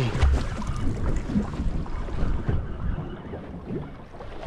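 Wind rumbling on the microphone over water sloshing against a boat's hull, growing quieter in the second half.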